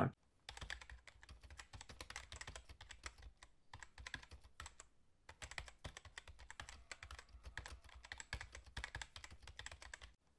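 Faint, fast computer keyboard typing: a dense run of quick key clicks with brief pauses about four and five seconds in.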